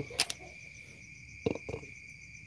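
Crickets trilling steadily in the background, a continuous high-pitched drone, with a sharp click just after the start and a few brief handling sounds about a second and a half in.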